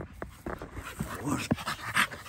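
A dog panting hard right at the microphone in quick, breathy strokes, with a sharp bump near the end as its muzzle meets the phone.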